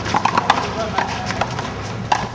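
One-wall handball rally: a quick, irregular run of sharp smacks and taps as the ball is struck by hand and rebounds off the concrete wall and court, mixed with players' footsteps.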